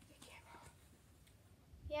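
Quiet pause with faint whispering, then a spoken "yeah" right at the end.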